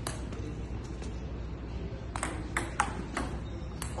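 Table tennis rally: the celluloid-type ball clicking sharply off rubber paddles and the JOOLA table top, about eight irregular hits with a lull of about a second in the middle.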